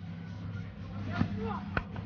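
Cricket ground crowd murmuring over a steady low hum, with a single sharp crack near the end: a bat edging the ball.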